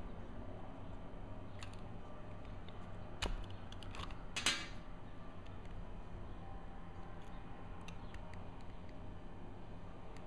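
Scattered small clicks and ticks of a small screwdriver and fingertips working the screws of a Minolta AF 50mm f/2.8 Macro lens's metal bayonet mount, with two louder sharp clicks about three and four and a half seconds in.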